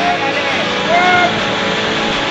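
Steady rushing of whitewater rapids with wind on the microphone, and one short call from a person on the bank about a second in.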